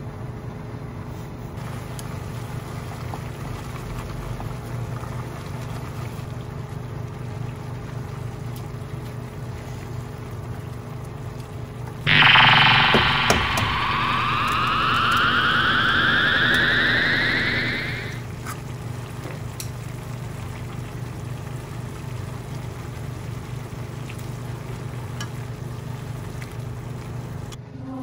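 Ramyeon simmering in a pan on a gas stove under a steady low hum. About twelve seconds in, a loud whine starts suddenly and rises steadily in pitch for about six seconds before fading: a charging-up sound effect.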